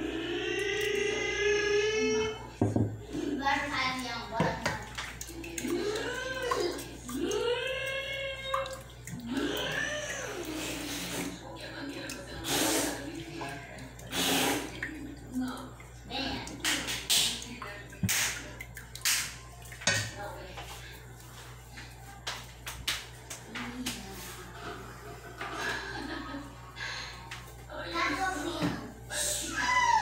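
Wooden spoon stirring warm milk and yeast in a stainless steel pot: liquid sloshing, with many sharp clicks and knocks of the spoon against the pot, heaviest in the middle. A voice carries on in the background, strongest in the first ten seconds.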